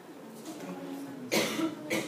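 A person coughing: one sharp burst a little over a second in, with a smaller one near the end.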